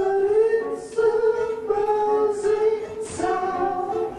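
Live singing: voices hold sustained notes that change about once a second, with little or no instrumental accompaniment.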